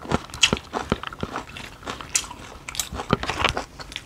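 Close-miked eating: people biting and chewing food, with crunching, heard as an irregular run of short sharp clicks and crackles.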